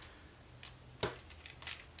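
A few faint clicks and ticks as small plastic RC car suspension parts and a screwdriver are handled. The sharpest click comes about a second in.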